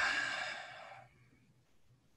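A man's sigh: one long, audible exhale that fades out about a second in.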